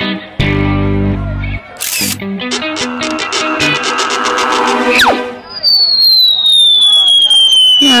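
Cartoon soundtrack: plucked guitar music with a held low chord, then a sharp hit and a quick run of even ticks. About five seconds in comes a quick falling swoop, followed by a long, slowly falling whistle effect with mumbling cartoon character voices beneath it.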